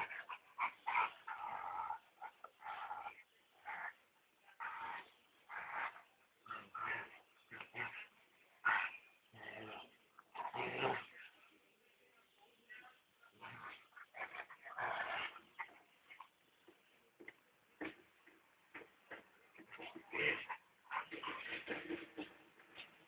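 Slovak Cuvac dogs, an adult and a puppy, making short, irregular play-fight noises as they wrestle, with brief pauses in between.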